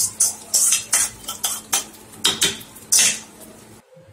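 Metal spoon scraping and clinking against the inside of a stainless-steel Prestige pressure cooker while stirring thick cooked rice-and-lentil pongal, a few strokes a second. The strokes stop about three seconds in.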